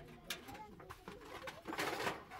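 Aluminium foil crinkling and rustling as hands work on it, in short rustles with the loudest near the end.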